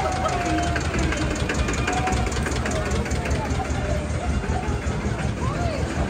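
Vintage tractor engine running slowly as it passes close by, a low rumble with a fast, even knock, with crowd voices around it.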